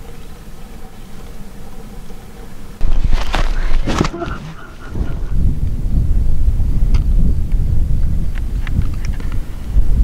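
Quiet room tone, then, about three seconds in, a sudden loud, low rumble of wind buffeting the microphone outdoors, with a few sharp knocks just after it starts.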